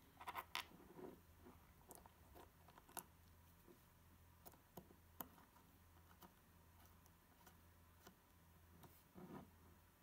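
Near silence with faint clicks and light scrapes of small metal extruder parts and an Allen key being handled, a short cluster of them just at the start and another near the end, over a low steady hum.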